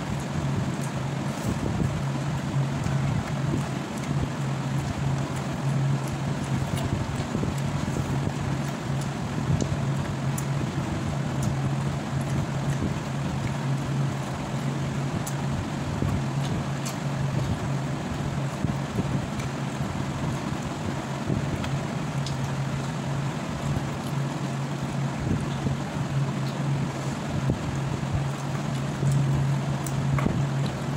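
A steady low mechanical hum with a rushing noise over it, unchanging throughout, with faint small clicks scattered on top.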